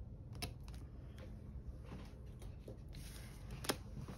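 Faint handling of paper stickers on a planner page: a few light, scattered clicks and taps, the sharpest one near the end.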